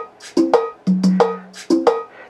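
Roland Octapad SPD-30 playing back a programmed cumbia percussion phrase loop at 90 BPM: a steady pattern of pitched drum strokes and sharp high ticks, several hits a second.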